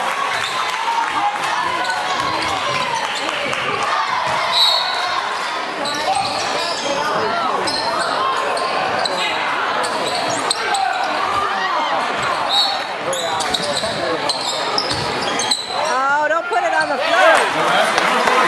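Basketball game sounds in a gym: a ball bouncing on the hardwood court, occasional short sneaker squeaks and steady crowd chatter with echo, with voices rising near the end.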